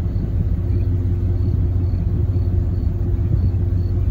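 Steady low rumble of an approaching Amtrak train led by a GE P32-8 diesel locomotive, with a faint steady engine drone over the deep rumble.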